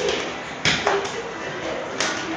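Two children scuffling in a play fight: two sharp impacts, a loud one about two-thirds of a second in and a lighter one just after.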